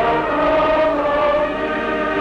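A large congregation of sailors singing a hymn together in unison, in long held notes that move from one pitch to the next.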